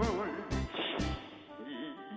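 A singer holds sung notes with heavy vibrato over a trot backing band track, with drum beats on the first half of the bar. The accompaniment thins out in the second half, where a lower vibrato note is held.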